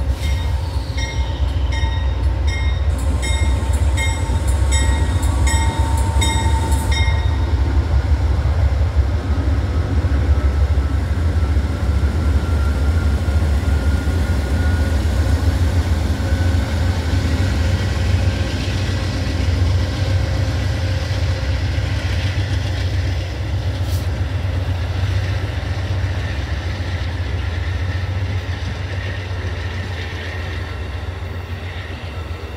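Amtrak passenger train with two GE Genesis diesel locomotives pulling past at low speed: a heavy, steady diesel rumble, then the coaches rolling by. For the first seven seconds or so the locomotive bell rings in even strokes, a little under two a second.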